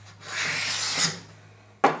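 Homemade wooden jack plane with a shop-made A2 steel blade taking a fine, thin shaving along a wooden board: one hissing stroke lasting about a second. Near the end comes a sharp knock as the next stroke begins.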